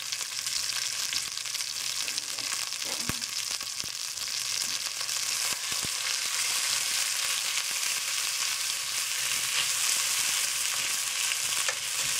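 Ground turkey sizzling in a very hot cast-iron pot with a little grapeseed oil: a steady, dense frying hiss that grows slightly louder in the second half. A few taps and scrapes of a spatula against the iron come as the meat is broken up.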